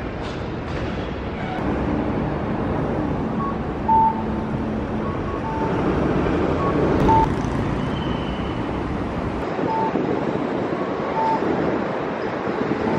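City street ambience: steady road traffic, with short high beeps repeating about every one and a half seconds from about four seconds in.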